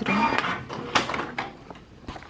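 Canon G3160 inkjet printer's paper feed running as a large printed photo comes out, followed by a few sharp clicks around one second in.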